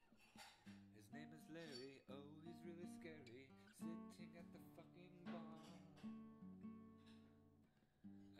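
Cutaway acoustic guitar played by hand: picked notes and chords ringing and overlapping in an instrumental passage of a song.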